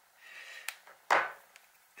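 Small handling noises at a hobby desk: a light rustle and a sharp click, then a louder short knock about a second in as a metal hobby tool is set down on a cutting mat.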